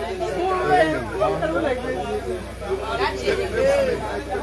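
Several people talking at once, their voices overlapping in a crowd's chatter, over a steady low hum.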